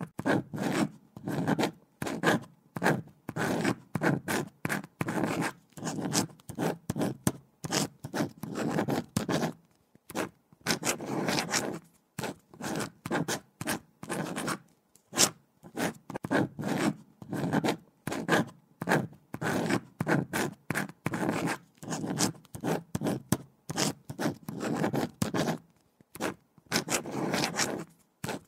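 Pen writing on paper: quick scratching strokes come in bursts of a second or two, with short pauses between them, like words being written one after another.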